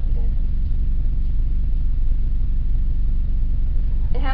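Steady low background hum, unchanging in level.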